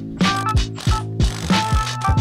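Socket ratchet clicking as it snugs a nylock nut onto a leaf-spring shackle bolt, over background music with a steady beat.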